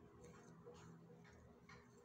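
Near silence: room tone with a few faint ticks as yarn is worked with a metal crochet hook.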